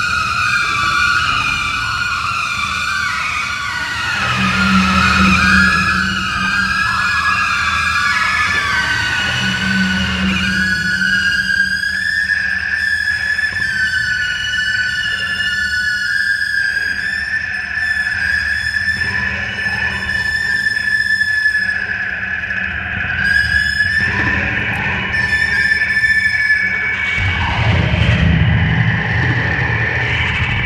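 Daxophone, a bowed thin wooden blade amplified through a contact pickup, played in long held high tones that slide slowly in pitch, over a low droning tone that swells a few times, loudest near the end.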